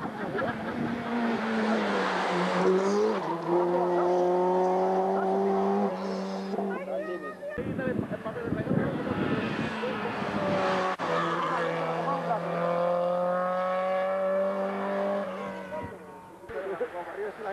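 Rally car engines at high revs on a tarmac stage, the pitch climbing for several seconds as a car accelerates up the road. This happens twice, with a rushing noise without a clear tone in between.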